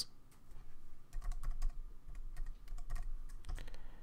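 Computer keyboard keys clicking lightly in short runs of keystrokes as a short passphrase is typed in.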